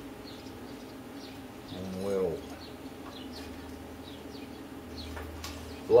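Faint high bird chirps over a quiet room, with one short low rising-and-falling hum-like sound about two seconds in. A low steady hum comes in at that point and carries on.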